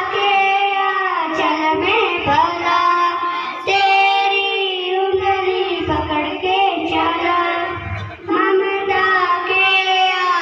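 A schoolgirl singing a song solo into a microphone, in long held, wavering phrases; new phrases begin a little before four seconds in and again about eight seconds in.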